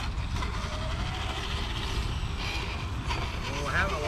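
Electric RC scale rock crawler whirring as its motor and gears drive it up a dirt slope, over a steady low rumble. A voice starts up near the end.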